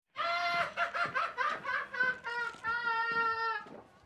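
A person's high-pitched laughter in quick, rapid bursts, starting abruptly and dying away just before the end.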